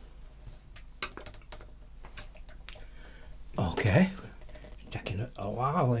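A few light, sharp clicks and clinks of paintbrushes being handled and set down against hard painting gear, then a man's voice in the second half.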